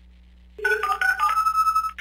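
After a brief pause, a short electronic ringtone-like melody of steady, clear tones stepping from pitch to pitch, played as a telephone-style sting.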